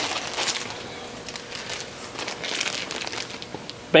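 Clear plastic bag crinkling as metal push-to-connect tee fittings are handled inside it and one is taken out. The crinkling comes in two louder spells, at the start and again around the middle.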